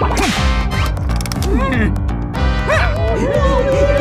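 Cartoon background music with a steady beat, overlaid by wordless cartoon character vocalisations: squeaky, sliding grunts and strained noises. A short swish comes just after the start.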